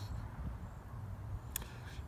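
Wind rumbling on the microphone, with one sharp click about one and a half seconds in.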